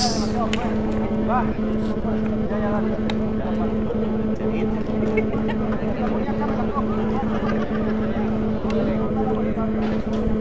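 Scattered voices of players and spectators talking at a distance over a steady low hum and rumble, with no single loud event.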